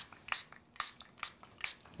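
Small hand-pump spray bottle misting water onto an ink-coated card background, about five quick short sprays, roughly two a second.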